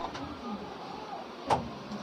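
Faint room noise with a single sharp click about one and a half seconds in.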